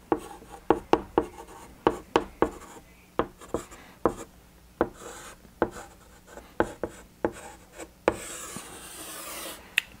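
Chalk writing on a blackboard: a quick, uneven series of sharp taps and short scratches as letters are formed, then one longer continuous scrape about eight seconds in as a line is drawn under the words.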